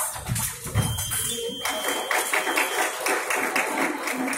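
Sudden thuds of fencers' footwork on the piste, then an electric epee scoring box sounding one steady high beep for about two seconds as a touch registers, with quick clapping-like taps over the second half.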